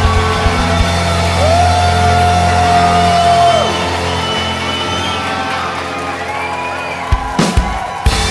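A live rock band holds out the closing chords of a song. The driving beat stops about a second in, guitar and keyboard chords ring on with a long held high note and slowly fade, and a few last sharp drum hits come near the end.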